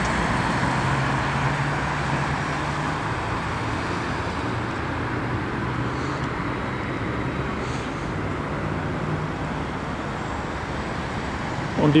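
Steady road traffic noise from passing cars, with a low engine hum underneath that fades out about nine seconds in.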